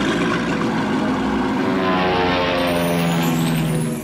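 Sound effect of a small propeller airplane's engine running steadily, its pitch falling slightly in the second half, cutting off at the end.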